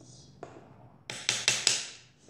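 Four quick sharp taps on a hard surface, about a fifth of a second apart, preceded by a single softer click.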